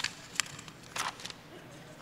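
Two faint clicks over quiet hall tone, about half a second and a second in: paper script pages being handled on a music stand.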